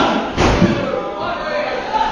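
Two heavy thuds on a wrestling ring's canvas, one right at the start and one about half a second later, followed by crowd voices.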